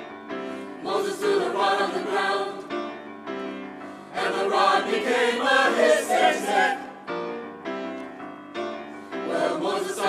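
Mixed choir singing with grand piano accompaniment. The voices swell in about a second in and more strongly about four seconds in, with the piano carrying on alone in the gaps between sung phrases.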